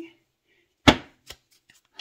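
One sharp tap about a second in, followed by a lighter click and a few faint ticks, from a deck of oracle cards being handled and knocked against the table.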